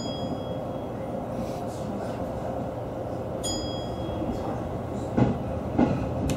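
A JR 209-series electric train pulling away, heard from the cab: a steady running noise with a level hum, a ringing high chime about three and a half seconds in, and two sharp knocks of the wheels over rail joints near the end.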